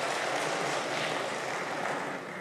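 Applause from many people clapping in a large hall, a dense, steady patter that begins to die away at the end.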